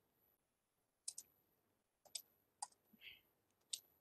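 Near silence with about six faint, separate clicks from computer use, made while a file is saved and the editor is worked.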